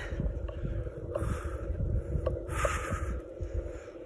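Gusty wind buffeting the phone's microphone, with cloth prayer flags flapping in it.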